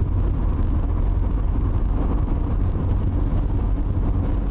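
Steady in-cabin drone of a 1990 Mazda RX-7 GTU cruising at about 50 mph: its 13B rotary engine and road noise, with no change in speed.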